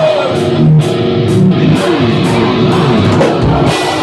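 Live hard-rock band playing loud, with distorted electric guitars and a drum kit in an instrumental passage without vocals; guitar notes slide down in pitch around the middle.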